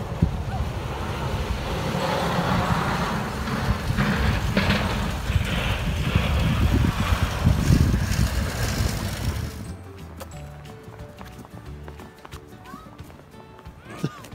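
Wind rumbling on the microphone and footsteps crunching through fresh snow while walking outdoors. About ten seconds in, the sound drops suddenly to a much quieter stretch.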